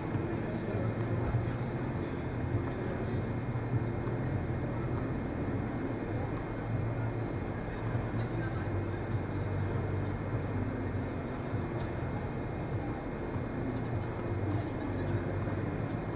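Steady low hum of the ventilation and air-conditioning filling a large indoor tennis hall, with faint voices and a few soft tennis ball hits on top.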